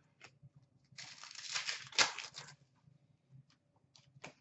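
Hockey trading cards being handled by hand: about a second and a half of cards sliding and rustling against each other, with one sharp tap about two seconds in and a few faint ticks.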